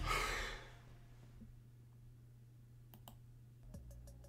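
A pop-R&B track ends, its last sound dying away within the first half second. What remains is quiet room tone with a low steady hum, broken by a couple of sharp clicks about three seconds in.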